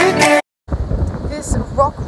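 Pop music with a beat that cuts off abruptly about half a second in. After a moment of silence, strong wind buffets the phone's microphone with a low, gusting rumble, and a few short voice sounds come in near the end.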